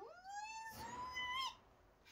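A woman's high, meow-like squealing voice. The pitch slides up, is held for about a second, then cuts off.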